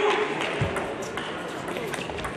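Table tennis ball in a fast doubles rally: sharp clicks of the celluloid ball off rubber-faced bats and the table, a few strokes roughly half a second apart, over a murmur of voices in the hall.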